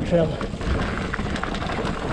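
Ibis Ripley 29er mountain bike rolling down rocky dry dirt singletrack: a steady rush of tyre noise over dirt and stones with scattered clicks and knocks from the bike rattling over rocks.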